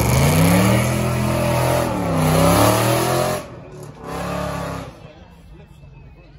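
A supercar's engine revving hard as the car accelerates past, the revs dipping about two seconds in and climbing again. The engine cuts back, gives one more short burst of revs about four seconds in, then fades away.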